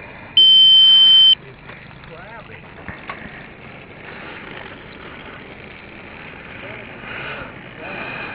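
A single loud, high, steady electronic beep lasting about a second, starting just under half a second in, followed by faint outdoor background hiss that swells slightly near the end.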